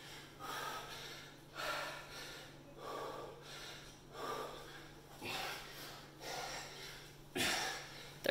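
A man breathing hard in sharp, noisy breaths, about one a second, while squatting and pressing a 57 lb sandbag overhead in repeated thrusters: heavy breathing from exertion.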